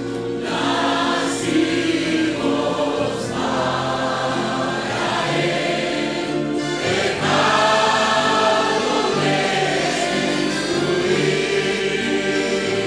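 Many voices singing a hymn together in slow phrases of long held notes.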